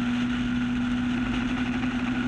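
Four-cylinder engine of a Super 7 420R race car heard from its open cockpit, running at steady high revs along a straight, its pitch holding level.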